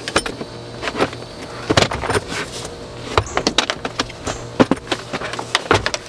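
Irregular plastic clicks, knocks and rattles of a Graco Affix booster seat being handled as its base is turned over and its high back fitted back on, with sharper clicks about two seconds in and near the five-second mark.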